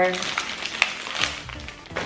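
Plastic snack wrapper crinkling and rustling as it is worked open by hand, with a few short sharp crackles, over quiet background music.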